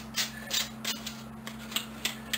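A pair of old steel pliers, just cleaned of rust, being worked open and shut by hand, giving several short metal clicks and scrapes at the joint. The freed-up pivot now moves readily.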